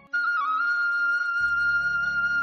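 Background instrumental music: a long held melody note with brief dips in pitch, picking up right after a momentary break, with a low accompaniment coming in about halfway through.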